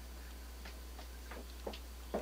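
Footsteps tapping on a hard floor, about two to three steps a second, starting about half a second in, over a steady low electrical hum.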